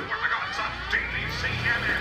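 Indistinct voice talking over a steady low rumble that swells from about half a second in.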